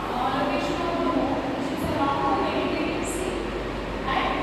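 A woman's voice lecturing, with steady background noise under it.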